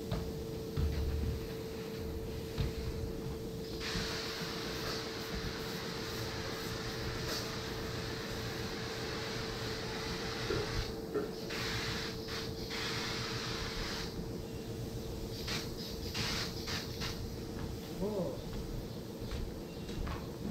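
Hose-fed spray gun hissing as it sprays a foam sculpture: one long hiss of several seconds, then a string of short bursts as the trigger is pulled and released. A steady hum runs underneath.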